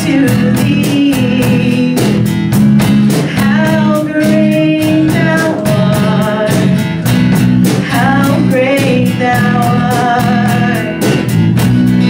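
A live worship band playing: acoustic guitars strummed in a steady rhythm under singers holding a flowing melody.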